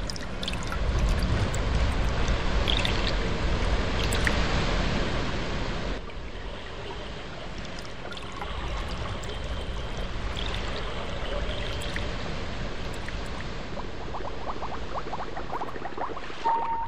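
Running water, like a flowing stream, with a deep rumble under it; it drops suddenly to a softer, steadier flow about six seconds in.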